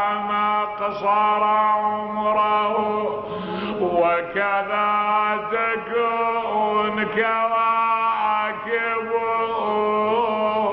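A man chanting an Arabic mourning elegy in long, ornamented held notes, with a steady low hum underneath.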